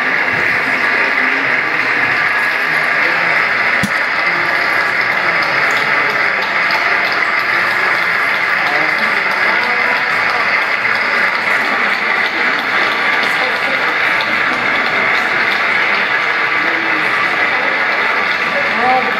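Sustained applause from a large audience, a steady even clatter of many hands that neither swells nor dies away.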